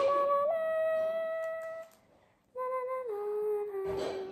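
A girl humming long held notes: one note for about two seconds, a short break, then a lower note that steps down partway through.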